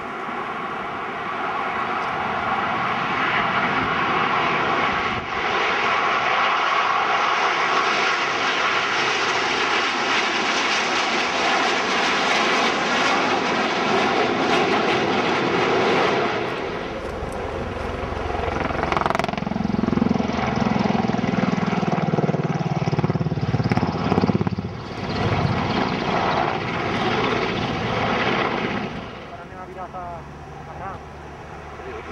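Jet engines of a formation of military display aircraft passing overhead, loud and steady after building over the first few seconds. A deeper rumble takes over in the second half.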